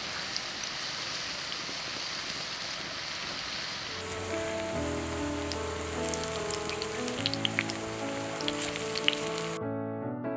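Raw banana slices shallow-frying in oil in a clay pan: a steady sizzle with a few sharp crackles in the second half. Soft piano music comes in about four seconds in, and the sizzle cuts off just before the end, leaving the music alone.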